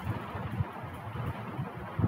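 Steady low background rumble and hiss, with faint irregular low knocks and no distinct event.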